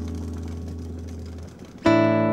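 Guitar music: a chord left ringing and slowly fading, its low notes dropping out about a second and a half in, then a new chord struck near the end.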